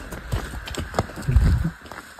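Footsteps on a dirt path with knocks from a hand-held phone being swung about, irregular, with a louder low thump about a second and a half in.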